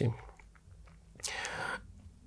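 A man's audible breath in during a pause in his speech, a short hiss about halfway through, just before he speaks again.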